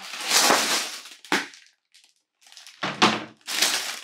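Plastic bags of LEGO pieces and a cardboard instructions box tipped out of a large LEGO set box onto the floor. Two noisy tumbles of plastic and cardboard, one at the start and one about three seconds in, with a short knock between them.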